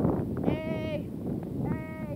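Wind buffeting a phone's microphone, with surf underneath. Two short high-pitched calls sound over it, the first wavering in pitch and the second steadier, near the end.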